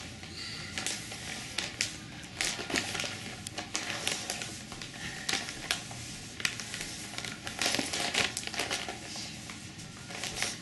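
Crinkly gift wrapping crackling and rustling in irregular bursts as a small dog noses and paws at the wrapped present.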